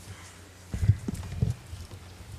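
A person stepping away from a lectern: two dull, low thumps about two-thirds of a second apart, over a faint steady electrical hum.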